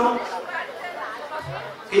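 Speech pause: a man's short word into a microphone at the start and again at the end, with fainter background voices murmuring in between.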